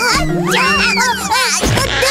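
Cartoon characters' high, gliding squeals and cries over steady background music.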